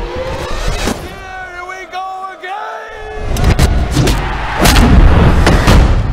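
Cinematic trailer sound design: a voice holding long, wavering notes over a drone, then deep booms and heavy impacts from about three seconds in, loudest near the end.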